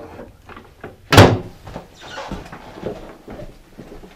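A hotel room door shut with a single loud bang about a second in.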